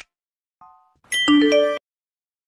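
Short electronic chime sting for a logo animation: a brief soft ding, then a louder, bright bell-like chord about a second in that cuts off abruptly.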